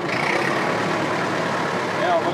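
IMT 560 tractor's three-cylinder diesel engine running steadily as the tractor drives slowly forward.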